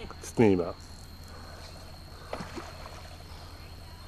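A person's short call about half a second in, then quiet outdoor background with a faint, steady high tone and a faint brief sound about two and a half seconds in.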